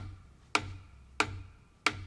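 A wooden drumstick tapping single strokes, each one allowed to bounce off the surface and be picked back up by the fingers. Four even taps come at about one and a half a second.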